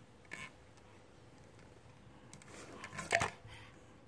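Mostly quiet room with faint clicks of a red plastic toy tube being handled, and a brief louder click or knock about three seconds in.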